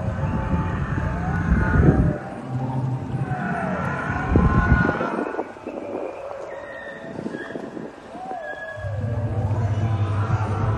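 Recorded dinosaur growls and roars played from an animatronic Spinosaurus's speaker: low rumbling drones that stop and start, with drawn-out gliding calls over them and a quieter spell in the middle.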